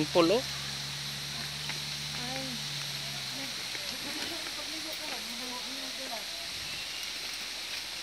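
Faint distant voices over a steady outdoor hiss, with a low hum that stops about three seconds in.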